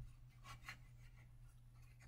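Near silence, with a few faint rustles about half a second in as a silk-type necktie is slid up and tightened at a shirt collar; a low steady hum runs underneath.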